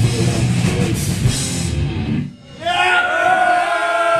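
Hardcore punk band playing live and loud, distorted guitar, bass and drums together, stopping abruptly about two seconds in. After a brief gap come held, slightly wavering pitched tones through the PA.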